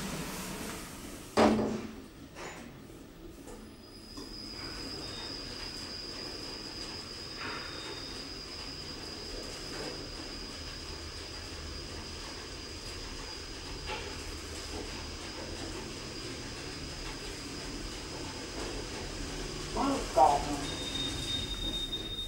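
Otis scenic traction lift riding up: a knock about a second and a half in, then a steady rumble with a thin high whine that runs through the travel and stops just before the car arrives. A few short high tones sound during the ride, and another near the end.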